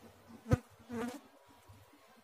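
Ballpoint pen writing figures on paper against a faint low buzz, with a sharp click about half a second in and a short, softer sound near one second.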